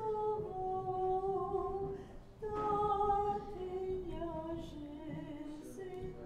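Unaccompanied Orthodox liturgical chant, a woman's voice most prominent, singing long held notes that step down in pitch. There is a brief pause for breath about two seconds in, then a new phrase begins.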